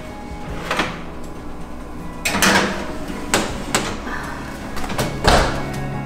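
Background music over kitchen clatter: a metal baking tray going onto an oven rack and the oven door being shut, heard as several sharp knocks, the loudest about two and a half and five seconds in.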